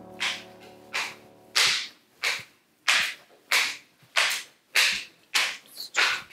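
Footsteps on hard stairs and floor: an even walking rhythm of short, sharp steps, about three every two seconds.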